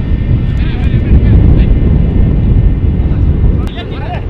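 Heavy, gusting low rumble of wind buffeting the microphone, with faint distant voices on a pitch about a second in and again near the end.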